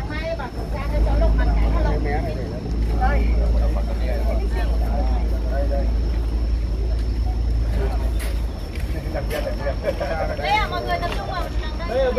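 Background chatter of a group of people talking among themselves, no single voice clear. Under it runs a steady low rumble that dies away about eight and a half seconds in.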